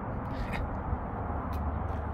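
Outdoor background noise: a steady low rumble with two faint light ticks, about half a second and a second and a half in.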